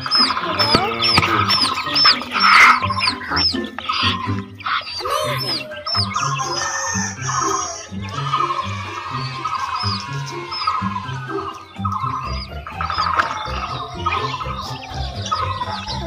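Chicks peeping: quick, high-pitched chirps repeated several times a second, over background music with a steady beat.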